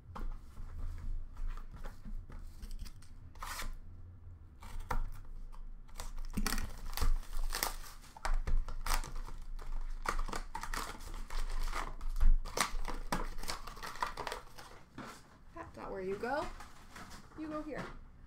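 Foil hockey card packs being torn open by hand, a dense run of crackling tears and crinkles as the wrappers are ripped and pulled off the cards.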